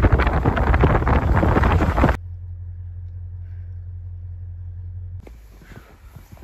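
Wind blasting across the microphone for about two seconds. After a sudden cut, a steady low rumble of a car on the road, heard from inside the cabin, for about three seconds.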